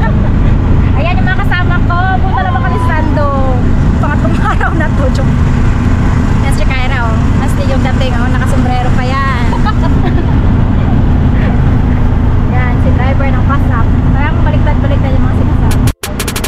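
Steady rumble of a moving auto-rickshaw heard from inside its passenger cabin, with wind buffeting the microphone. Women's excited voices and laughter ride over it.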